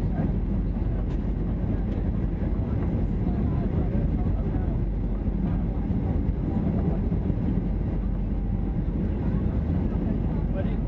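Steady cabin noise of a Boeing 737-800 on its landing approach, heard from a window seat near the wing: an even, low rumble of engines and rushing air that holds level throughout.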